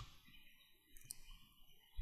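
Near silence: a pause in the narration, with one faint click about halfway through.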